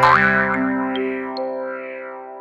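Closing of a short cartoon logo jingle: a quick rising 'boing' swoop, then a held chord that rings out and fades steadily, with two small high pings about a second in.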